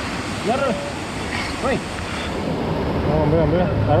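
Steady noise of road traffic passing overhead, with a low rumble building from about halfway through as a vehicle goes by, under short shouts.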